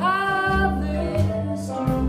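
A small jazz band playing: a woman sings a long held note over upright bass notes, with guitar accompaniment.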